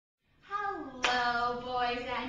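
A single sharp hand clap about halfway through, over a woman's voice holding a steady, drawn-out pitch.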